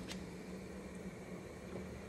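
Faint steady hiss of a large copper stockpot of water simmering on the stove, with a low steady hum underneath.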